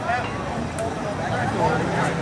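Spectators talking close by, over a pickup truck's diesel engine idling; the engine's steady hum comes up near the end.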